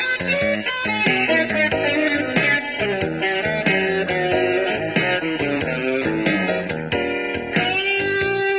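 Electric guitar playing a straight blues instrumental, with a bass guitar underneath.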